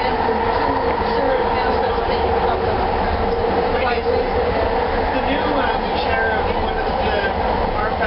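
Bombardier Mark II SkyTrain car running along the guideway, heard from inside the car: a steady, unbroken running noise of the train on the track.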